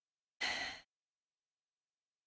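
A woman's short sigh, a single soft breath out into a close microphone about half a second in.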